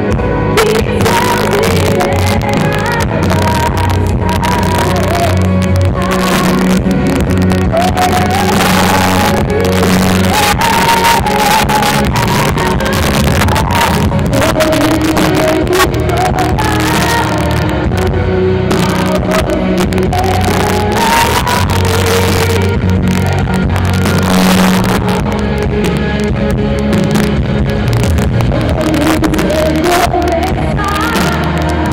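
Live band music played loud with drums, electric bass and keyboard, recorded from among the audience.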